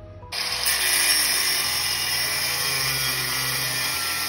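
Angle grinder cutting through the steel of a van seat base: it starts abruptly about a third of a second in, then runs as a loud, steady grind.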